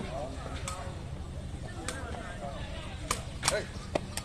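Sharp knocks of a sepak takraw ball being kicked back and forth in a rally, about five over the few seconds, two of them close together near the end. Faint chatter of onlookers underneath.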